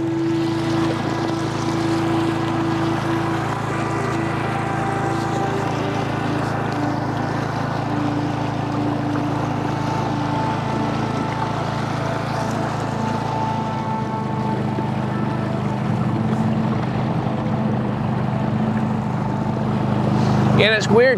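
A boat's outboard motor running steadily while underway, a continuous low drone that shifts slightly in pitch about two-thirds of the way through.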